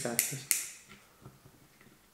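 Two sharp clicks close together in the first half-second from the wind-up mechanism of a First Strike T15 paintball magazine, as it is wound back a click at a time to ease the feed spring's tension.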